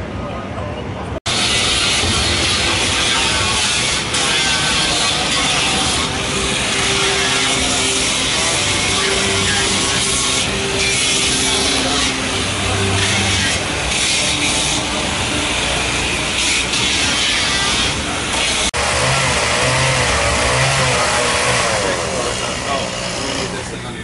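Power carving tools working a wooden sculpture: a loud, steady hiss of cutting and grinding into wood, broken off abruptly about a second in and again near the end as the sound shifts.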